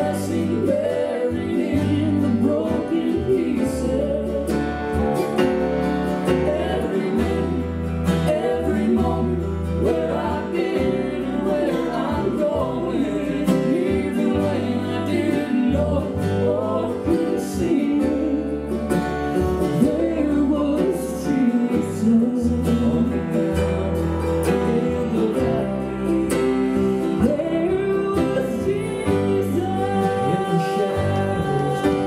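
Acoustic southern gospel song played live on mandolin and acoustic guitar, with a singing voice over plucked chords and low bass notes.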